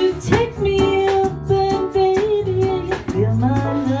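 A woman singing live with a band of guitar and drums, holding one long note and then dropping to a lower one near the end, over a steady drum beat.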